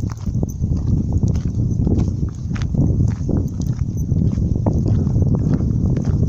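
Loud, steady rumble of wind buffeting a handheld camera's microphone while walking outdoors, with irregular clicks and knocks from footsteps and handling.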